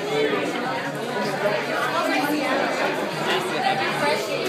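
Crowd chatter of many diners talking at once in a busy restaurant dining room, a steady hubbub of overlapping voices.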